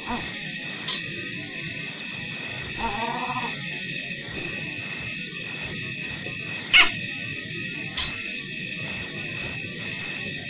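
Steady high-pitched chirring of night insects, with a short low animal call about three seconds in and a brief sharp squeak near seven seconds.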